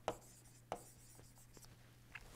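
A few faint taps and scratches of a stylus writing on a tablet, over a low steady hum.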